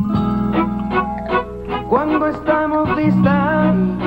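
A tropical dance band playing the instrumental introduction of a song, with electric guitar and a steady drum beat. About halfway in, a wavering melody line with vibrato comes in.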